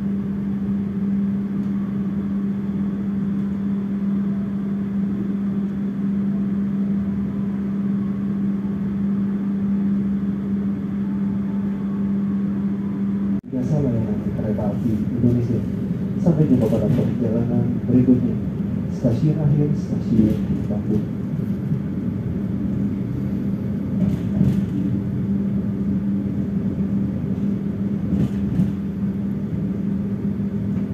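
Passenger train heard from inside the coach while under way: a steady hum and rumble. After a brief dip about 13 seconds in, the sound grows busier, with scattered sharp clicks and knocks.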